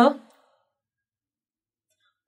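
The last syllable of a woman's spoken question trails off about a third of a second in, followed by complete silence, as in an edited pause.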